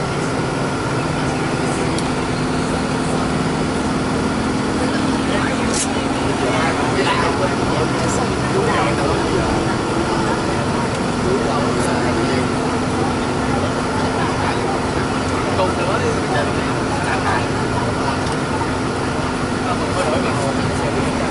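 Steady engine hum and road noise inside a moving vehicle, with voices under it.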